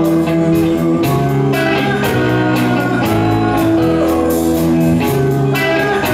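Live rock band playing an instrumental passage: electric guitar, bass guitar and drums, with cymbals struck at a regular pulse and no singing.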